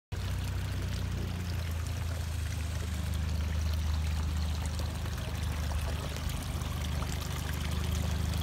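Water pouring and trickling steadily into a lily pond, over a steady low hum.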